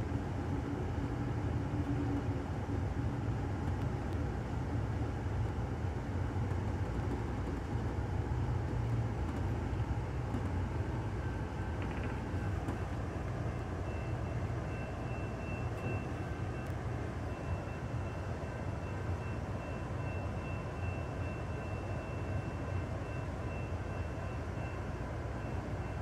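Low steady rumble inside the rear car of an Amtrak Superliner train as it slows almost to a stop. About halfway through, a faint thin high whine joins it and holds.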